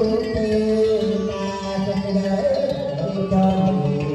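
A man singing a Vietnamese cải lương song into a microphone, with plucked-string accompaniment, in long held notes that bend and slide in pitch.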